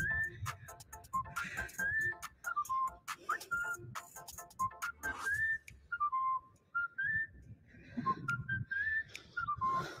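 A person whistling a simple tune: single clear notes, each held briefly, stepping up and down between a few pitches, with faint clicks underneath.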